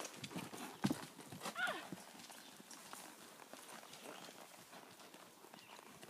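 A horse trotting: a steady run of hoofbeats, louder in the first two seconds.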